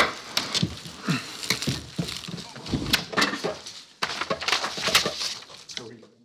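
Knocks, bumps and rustling as people get up from a table and handle papers and microphones, mixed with a few brief low voices; it all cuts off abruptly at the end.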